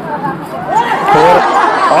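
Only speech: men talking in conversation, the voice growing louder and more animated about halfway through.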